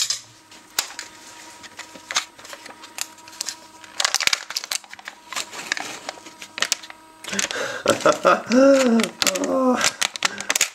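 Scattered clicks and crinkling as the foil lid is peeled back from a plastic Müller Corner yogurt pot, densest about four seconds in. A person's voice follows for the last two or three seconds.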